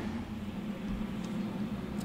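Monport CW-5200 industrial water chiller running, a steady hum from its cooling fans and pump circulating water for the laser tube.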